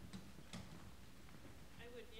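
Near-silent hall room tone with two faint clicks about half a second apart, as board members settle into their chairs at the tables. A faint voice begins near the end.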